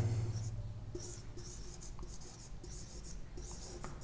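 Marker pen writing on a whiteboard: a run of short, faint rubbing strokes as a word is written out.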